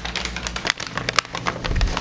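Crumpled packing paper crinkling and rustling as it is handled and unwrapped by hand, a dense run of sharp crackles, with a low bump near the end.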